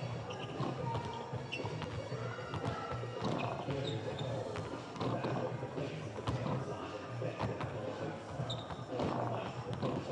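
Arena music with a steady low beat echoing through a large, near-empty hall, with basketballs bouncing on the court through it.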